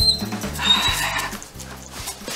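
A horse whinny sound effect, about half a second in, over background music with a steady low bass line.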